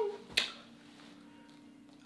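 A single sharp click about half a second in, then quiet room tone with a faint steady hum.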